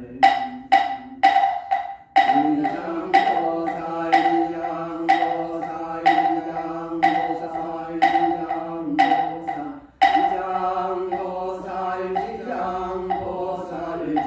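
Buddhist monk chanting a sutra in a steady, held tone, kept in time by sharp strikes on a wooden fish (moktak): quick at first, then about one a second. The strikes fade after about ten seconds while the chant continues, with short breaks for breath.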